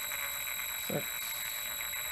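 Electric hand drill running slowly with a steady high-pitched whine and a fine rapid chatter underneath, turning a wire hook that twists a thin stainless steel music wire.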